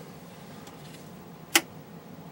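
A single sharp click about three-quarters of the way through, over a faint steady low hum: the capacitor tester's voltage selector being switched down a step.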